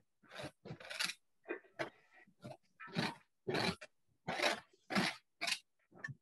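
Palette knife scraping paint onto a stretched canvas: a string of about a dozen short, irregular strokes.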